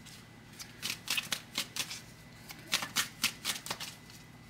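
A deck of tarot cards being shuffled by hand: a quick, irregular run of crisp card snaps that starts about half a second in.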